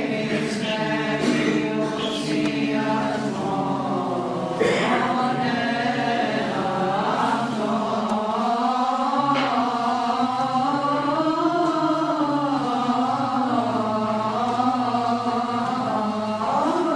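Byzantine chant in a Greek Orthodox church: voices singing a slow, winding melody over a steady low held note (ison).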